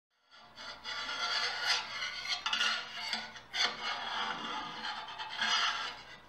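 Scissor blades scraping and rubbing across a handmade wing picked up by a contact microphone and run through effects: a harsh rasping noise that starts a fraction of a second in and swells and fades over several strokes.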